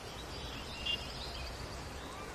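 Outdoor ambience: a steady low background hum with small birds chirping, one short chirp a little under a second in standing out.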